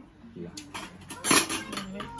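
Metal pots, pans and cutlery clinking and clattering in a quick run of strokes, loudest just past the middle, with voices faintly under it.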